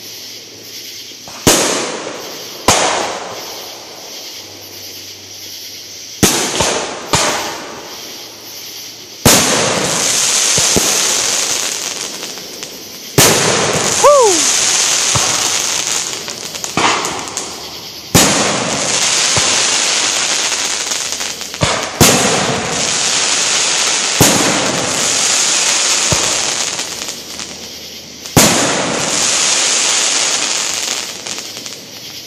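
Aerial fireworks shells bursting: about a dozen sharp booms at irregular intervals, each trailing off, with a sustained hiss and crackle lingering after the later bursts. A short falling whistle cuts through about halfway.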